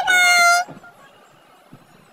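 A short, high-pitched call with a rising start held steady for about half a second, then only faint background hiss.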